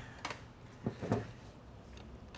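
Faint handling noise of tools and transmission parts on a workbench: a few short knocks and clicks, the loudest about a second in, then low shop room tone.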